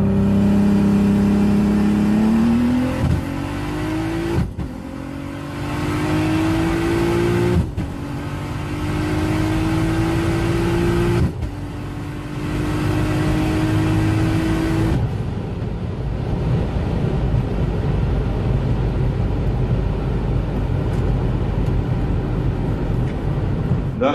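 Turbocharged VR6 engine of a Golf IV R32 pulling hard at high speed, heard from inside the car: the engine note climbs steadily in each gear, broken by three quick upshifts. After about fifteen seconds the engine note is lost in a steady rush of wind and road noise.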